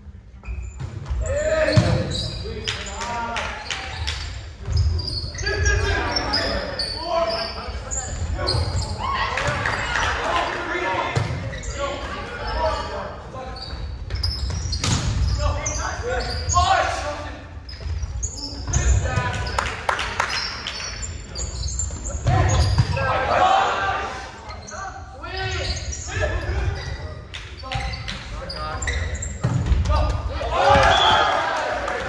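Volleyball rally in a large echoing gym: repeated sharp slaps of the ball being hit and bouncing on the hardwood court, among players' shouts and calls.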